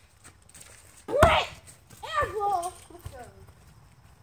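A loud excited shout from a boy about a second in, then more excited voices. Under them are a few dull thuds of a basketball bouncing on hard ground.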